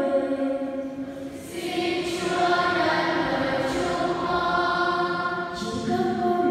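A choir singing held notes of a slow liturgical chant, part of the sung prayers of the faithful at Mass. The singing dips about a second in and swells back up.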